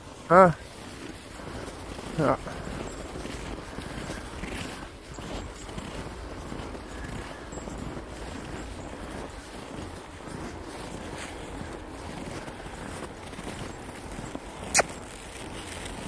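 Footsteps on snow under a steady low hiss, with one sharp click near the end.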